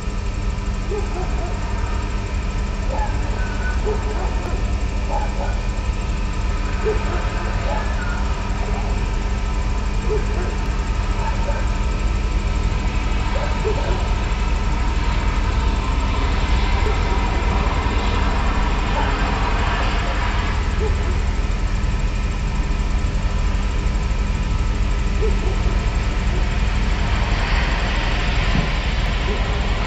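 Dense ambient drone: a steady low rumble with several sustained tones held over it and faint scattered short sounds, growing a little brighter and louder in the second half.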